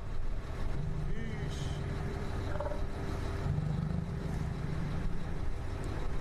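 Engine running steadily with a low rumble and a faint steady hum.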